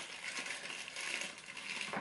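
Crinkling and rustling of a foil Pop-Tarts wrapper being torn open by hand.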